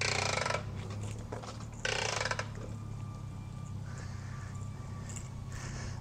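Self-retracting hose reel clicking as the suction hose is pulled off it, in two short spells about two seconds apart.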